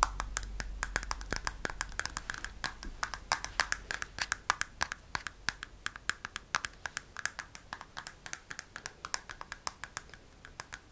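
Fingernails tapping and clicking on the plastic ear-cup fillers of white over-ear headphones, quick irregular taps several a second.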